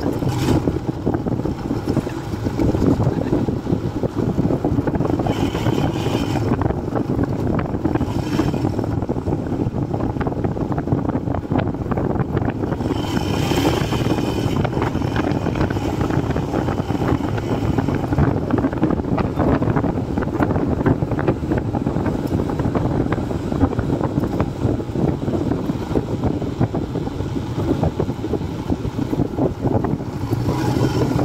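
Royal Enfield Himalayan's 411 cc single-cylinder engine running steadily as the motorcycle rides along a rough dirt track.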